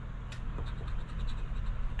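A coin scraping the coating off a scratch-off lottery ticket, short scratching strokes over a steady low hum.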